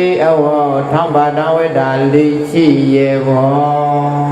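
A man's voice chanting a Buddhist dhamma recitation, in long held notes that slide slowly between pitches.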